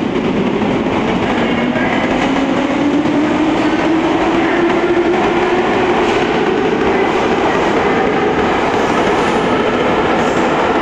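Metro train moving past the platform and gathering speed: a steady rumble of wheels on rails, with the traction motors' whine rising in pitch over the first five seconds and then holding steady.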